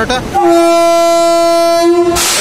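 Electric locomotive horn giving one long, steady blast of about a second and a half, starting about half a second in: the warning before the train departs.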